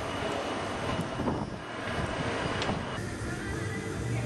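Steady street noise of passing traffic, an even rush with a few faint ticks.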